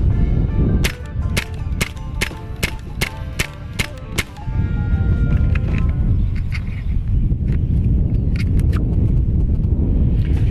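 A .25 Hatsan Invader semi-automatic PCP air rifle fired in rapid succession, roughly a dozen sharp shots over about three and a half seconds starting about a second in, emptying its magazine. Background music plays under the shots.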